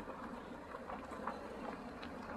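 Steady low outdoor background rumble with a few faint, brief sounds mixed in.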